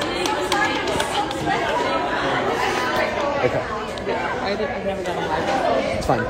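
Many people chattering at once in a large hall: overlapping voices with no single speaker standing out.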